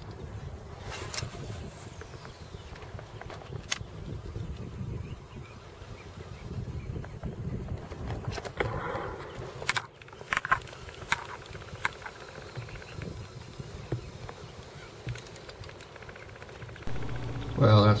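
Wind buffeting the microphone over a low rumble, with water lapping and scattered sharp clicks and knocks from handling the rod and kayak.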